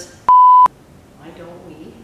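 A single steady high beep, a little under half a second long, that starts and stops abruptly and blanks out everything else while it sounds: an edited-in censor bleep covering a spoken word.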